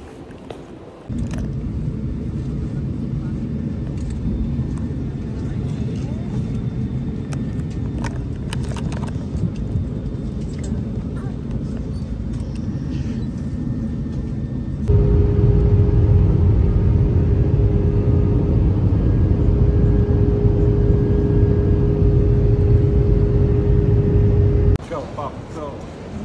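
Airliner cabin noise: the steady low rumble of the jet engines and airflow, heard in two clips. The second clip is louder and carries a steady hum, and it cuts off abruptly near the end.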